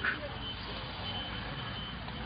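Steady background rumble with a faint, thin high-pitched whine that comes and goes, at the tail end of a man's word.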